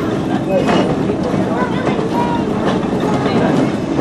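Passenger railway coach rolling along the track, heard from inside the coach: a steady rumble and clatter of wheels on rail.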